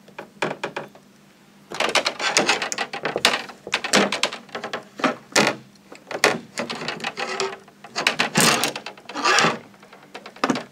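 A spinning fishing reel worked by hand, its bail arm clicking open and shut as the spool turns. A few light clicks at first, then from about two seconds in a dense run of clicks and short rattles.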